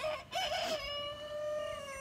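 A rooster crowing: one long drawn-out call that settles into a steady pitch and holds for more than a second.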